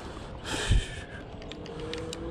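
Brief rustle ending in a single sharp thump, handling noise as a digital scale's hook is worked into the gill of a largemouth bass held in the hands. A faint steady hum comes in later.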